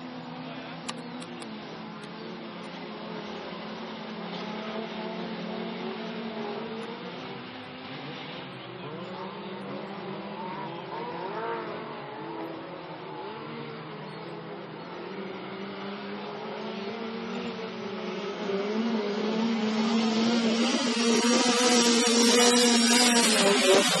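A pack of standard-class autocross cars racing on a dirt track, several engines revving up and down at once in overlapping pitches. The cars are distant at first and grow much louder over the last few seconds as they come past close by.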